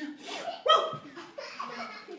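A voice giving short bursts of laugh-like vocal sounds, the loudest about two-thirds of a second in.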